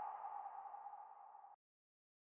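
The decaying tail of a single electronic ping, part of a logo-animation sound effect, fading out about one and a half seconds in.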